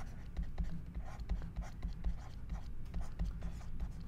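Pen stylus scratching and tapping on a drawing tablet as words are hand-written, a run of short faint ticks and strokes.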